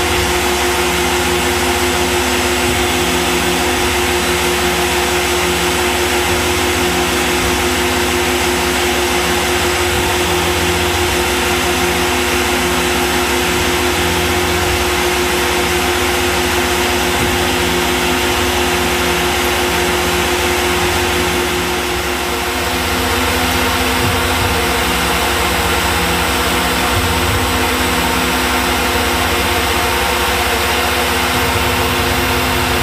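Tormach PCNC 1100 CNC mill spindle running steadily as an end mill cuts sheet stock under flood coolant: a continuous machine hum with a few steady tones over a spray-like hiss, briefly easing a little about two-thirds of the way through.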